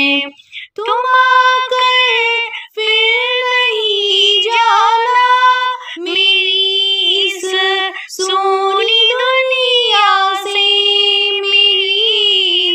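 A woman's voice singing a Hindi devotional bhajan to Shri Ram in long, held, gliding notes, with short breaks for breath between phrases.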